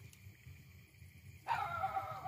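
A drawn-out animal cry with a wavering, slowly falling pitch starts suddenly about one and a half seconds in and is the loudest sound here.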